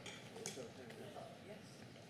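Quiet room with faint paper rustling from a Bible's pages being turned, and a small tick about half a second in.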